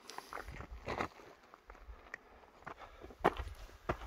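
Faint, irregular footsteps on a loose, stony mountain path.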